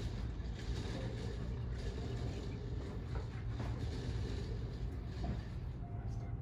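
Steady low rumble of a boat's engine running, with an even wash of noise over it.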